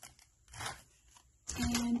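A brief rustle of a cardboard-and-plastic blister card of mini glass bottles being handled, about half a second in. A woman's voice starts near the end.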